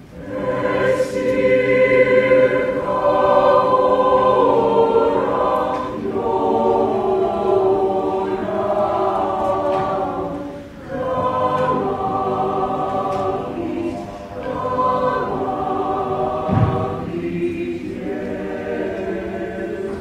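Mixed chamber choir singing sustained chords in several parts, coming in together at the start out of a hush, with brief dips between phrases about ten and fourteen seconds in. A short low thump sounds a little after sixteen seconds.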